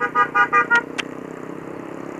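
A vehicle horn tooting in a quick series of short beeps during the first second, with a sharp click about a second in, over the steady hum of a Yamaha Mio i 125 scooter's engine.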